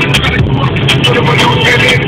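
Audi A3 Sportback cabin at about 200 km/h on cruise control: steady engine, tyre and wind noise, with music playing over it.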